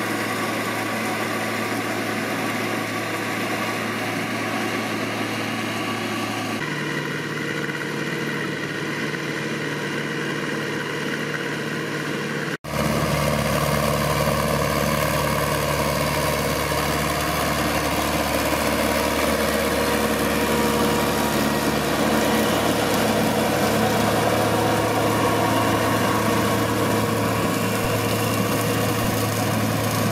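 Ursus farm tractor diesel engine idling steadily. The sound changes abruptly about six and a half seconds in, drops out for a moment near thirteen seconds, then idles on a little louder.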